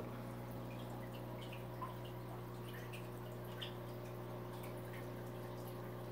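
Aquarium filter running: a steady low hum with faint, scattered drips and trickles of water.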